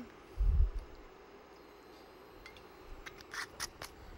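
Kitchen handling noise at a cooktop: a single low thump about half a second in, then faint rubbing and a few short clicks near the end, over a faint steady hum.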